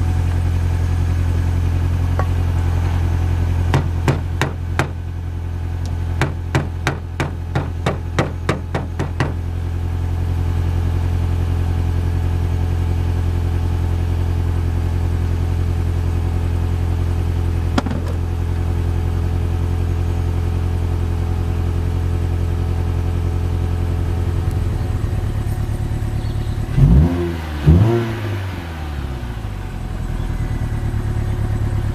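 Car engine, a 2005 Mini Cooper's four-cylinder, running at a steady idle. A run of regular clicks, about one and a half a second, comes a few seconds in. Near the end there are two short swings in pitch, heard as two loud bursts.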